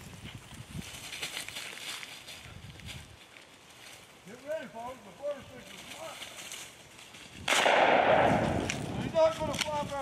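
A single shotgun shot about seven and a half seconds in, with a loud tail that dies away over a second or so.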